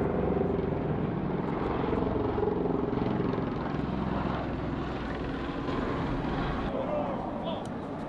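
A steady low engine drone, strongest over the first few seconds and slowly fading, with voices beneath it.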